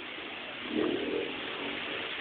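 Steady background noise inside a shop, with a brief faint voice in the background about a second in.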